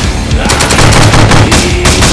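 Rapid automatic gunfire from several guns at once, a dense run of shots that starts abruptly, over loud music.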